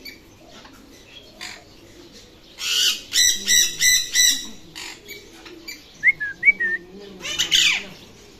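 Alexandrine parakeet squawking: a harsh burst a few seconds in, then a quick run of about five harsh calls, a few short whistled chirps, and one more loud squawk near the end.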